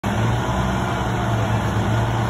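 A truck engine running steadily at a constant speed, a low even drone with no revving.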